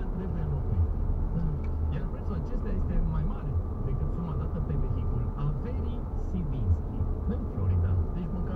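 Steady low drone of a car driving, heard from inside the cabin, with people talking over it.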